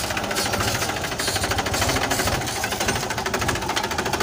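Mahindra 265 DI tractor's three-cylinder diesel engine running steadily with a rapid, even beat while pulling a disc harrow through the field.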